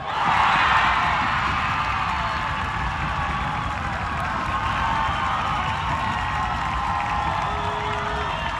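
Soccer crowd breaking into loud cheering and shouting all at once, loudest in the first second, then carrying on steadily: the reaction to a goal being scored.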